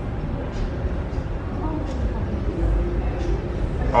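Steady low rumble of restaurant room noise with faint voices in the background and a few faint clicks.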